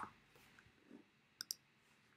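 Near silence, then two quick clicks close together about a second and a half in: a computer mouse clicking into a text field.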